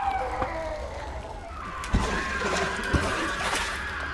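Experimental sound-art piece: several sustained, wavering tones that glide in pitch over a steady low hum, with two soft low thuds about a second apart in the second half.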